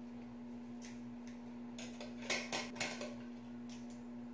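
Scissors snipping at thick dreadlocks: a handful of short sharp snips, the loudest three in quick succession a little past the middle, over a steady low hum.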